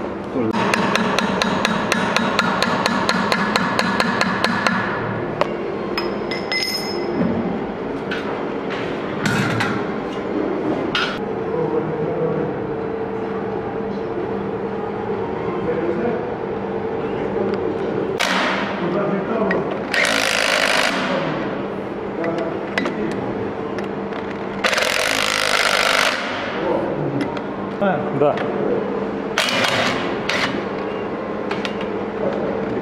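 Cordless impact driver hammering as it drives the screws of a taper bush into a cast-iron V-belt pulley: a long rattle of rapid impacts over the first few seconds, then several shorter bursts later on.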